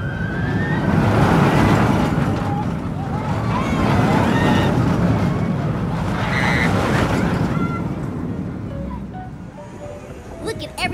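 Wind blowing across the microphone in two long swells, fading toward the end, with faint distant voices beneath it.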